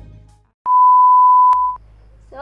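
A single steady, loud electronic beep, one pure tone lasting about a second, with a click near its end. The tail of the intro music fades out just before it.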